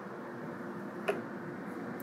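Steady hum of the laser's exhaust fan running, with a single sharp click about a second in.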